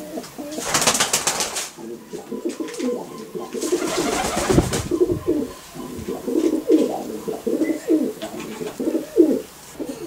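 Domestic pigeon hen cooing, a run of repeated low calls in the second half. Earlier, two spells of rustling from the feathers and the hands holding her.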